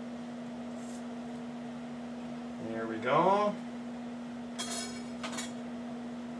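A man's short wordless vocal sound, rising then falling in pitch, about three seconds in, over a steady low hum. Two light clinks follow near the end.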